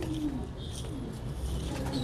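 Domestic meat pigeons in wire loft cages cooing faintly, a low gliding coo at the start and soft murmurs after.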